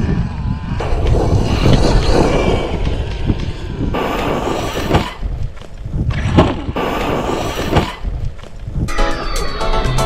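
Background music with sudden stops and restarts, a steady melodic part coming in near the end.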